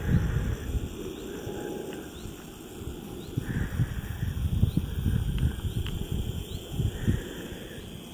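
Wind buffeting the camera's microphone in uneven gusts, a low rumbling that rises and falls.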